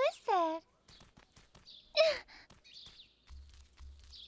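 A young cartoon character's voice making short wordless sounds: a quick sliding vocal sound at the start and a breathy sigh with a falling pitch about two seconds in, with faint rustling in between.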